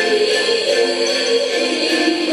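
A recorded song playing, a voice singing over the instrumental backing.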